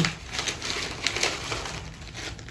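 Thin plastic bag and paper crinkling and rustling in the hands as a folded sheet is slipped into a clear resealable bag, with several short irregular crackles.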